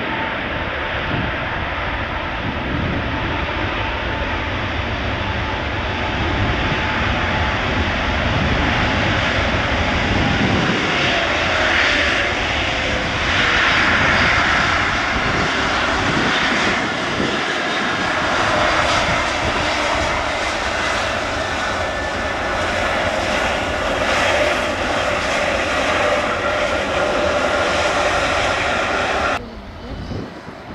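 Airbus A321neo's two turbofan engines running on the runway as the jet rolls: steady jet noise with a thin whine that slides down in pitch over the first ten seconds, swelling in loudness around twelve to fourteen seconds in. Just before the end the sound cuts abruptly to a quieter one.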